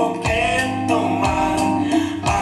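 Live song: a man singing over guitar, with percussion keeping a steady beat, a low thump about once a second and quicker light hits in between.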